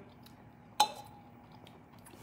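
A single sharp click a little under a second in, followed by a faint ringing tone that fades within about a second.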